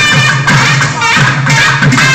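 Live South Indian classical (Carnatic) ensemble playing: a melody that slides between notes over steady hand-drum strokes.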